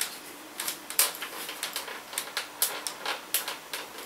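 About a dozen irregular sharp plastic clicks and taps as fingers work the latch button and its lock slider on the lid of a closed Samsung GT8000-series laptop. The lid stays shut.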